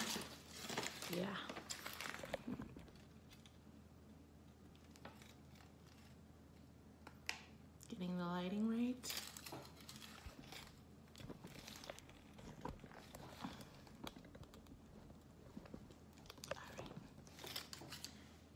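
Paper chip bag rustling and crinkling as tortilla chips are shaken out onto the counter in the first couple of seconds. Then only light handling clicks and crinkles, with a short hummed voice sound rising in pitch about eight seconds in.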